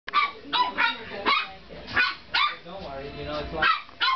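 Yorkshire terrier puppies yapping at play: a string of short, sharp yaps, about seven in four seconds.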